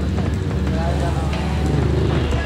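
Street noise dominated by a steady low hum of a vehicle engine running close by, with faint voices in the background.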